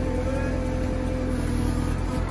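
Diesel engine of a JCB backhoe loader running steadily while its digger controls are worked, with a steady whine over a low rumble.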